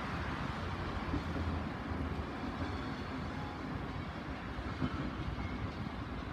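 Steady outdoor city noise: a low rumble of rail and road traffic.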